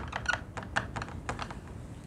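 Marker pen writing on a whiteboard: a quick run of short strokes and taps as a word is written out.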